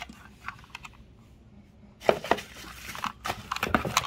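Plastic packaging crinkling and rustling as it is handled, starting about halfway through with crackly noise and sharp clicks; before that only a few light clicks from items being handled.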